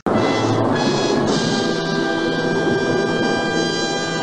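Dramatic orchestral music sting with brass and timpani: a loud chord that hits suddenly and is held.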